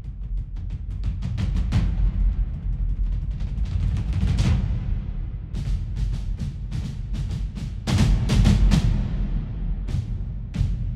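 Music playback of a cinematic ensemble drum part with long reverb tails over a sustained low bass. The hits come faster and faster up to a strong hit about four and a half seconds in, then return with a louder cluster near the end.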